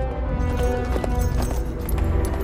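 Orchestral film score with long held notes, and a galloping horse's hoofbeats coming in about half a second in.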